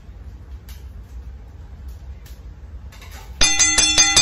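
A metal cooking utensil clanging against a frying pan several times in quick succession near the end, each strike leaving a long metallic ring. Before that, only faint clicks over a low hum.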